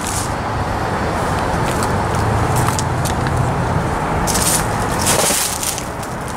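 Road traffic passing, a low rumble that swells in the middle, with crunching footsteps on dry leaves and debris near the end.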